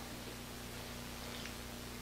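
Quiet room tone: a faint steady hiss with a low, even hum underneath.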